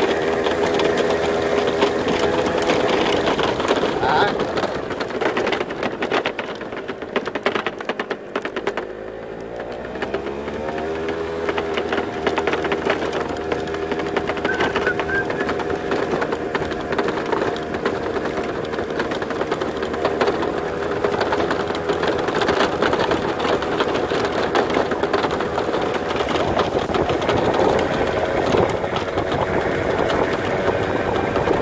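Small motor vehicle engine running steadily with a rattle. Its pitch and level dip about eight seconds in, then rise again a couple of seconds later.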